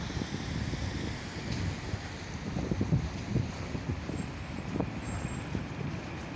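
City street traffic: a steady low rumble of cars passing on the road beside the pavement, with a few soft low knocks around the middle.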